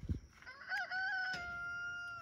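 A rooster crowing once: a wavering start about half a second in, then one long held note.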